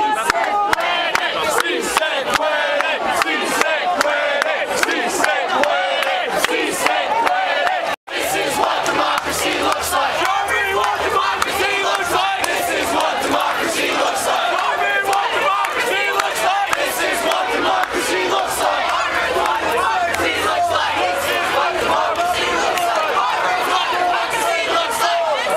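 A large crowd of protesters shouting and chanting together, many voices at once. The sound cuts out for a split second about eight seconds in.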